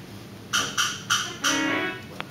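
Theatre pipe organ being played in a stop demonstration: four quick, identical, sharply struck notes about a quarter second apart, then a brief held note that fades out.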